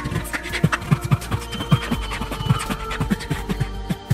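Beatboxing into a microphone: a quick rhythm of vocal kick-drum sounds with sharp clicks, and two brief high tones in the middle.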